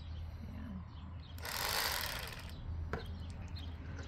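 Electric fillet knife running with a steady low hum as its reciprocating blades cut a white bass fillet. A brief rushing noise comes about a second and a half in, and a sharp click near the end.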